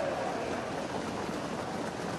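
Steady, even hiss of outdoor racetrack ambience during a harness-race finish, with no distinct cheer, hoofbeats or other single event standing out.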